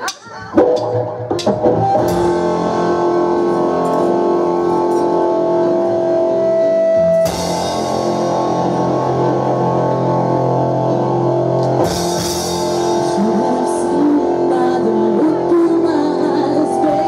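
Live rock band playing a song's instrumental opening on electric guitar, bass guitar and drum kit, with no singing. The sound shifts about seven seconds in, and cymbals come in louder around twelve seconds in.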